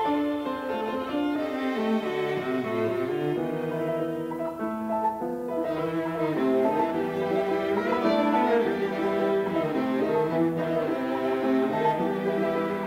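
Chamber music for piano quintet, with the bowed strings (violins and cello) to the fore, playing sustained, overlapping melodic lines that move steadily from note to note in a moderately lively movement.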